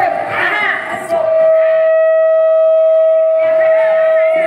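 A voice sings or chants a few quick syllables, then holds one long, steady, loud note from about a second in, in a devotional folk song.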